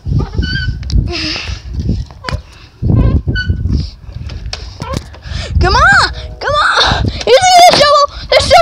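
Children's wordless voices: short calls, then bending, sing-song cries from about five and a half seconds in, ending in a high, wavering squeal near the end, over a low rumble of wind and handling on the phone's microphone.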